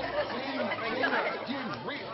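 Several people chattering and talking over one another. The background music drops out just after the start.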